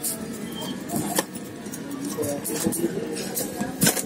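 Steady background of street traffic and faint distant voices, with a couple of sharp clicks of a screwdriver and wires being handled on a TV circuit board, one about a second in and one near the end.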